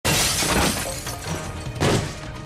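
A window pane shattering as something is smashed through it: a loud sudden crash that fades over about a second, with a second crash near the end. Dramatic score music plays underneath.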